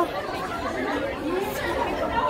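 Indistinct chatter of many people talking at once, a steady jumble of overlapping voices with no single voice standing out.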